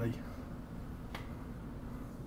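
London Underground Piccadilly line train moving slowly along the platform: a steady low rumble, with a single sharp click about a second in.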